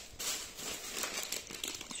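A thin plastic carrier bag and a plastic snack packet of Eti Balık kraker rustling and crinkling in a run of small crackles as a hand rummages in the bag and pulls the packet out.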